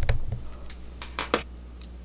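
Low thumps of handling noise in the first half-second, then a few faint short clicks over a steady low hum.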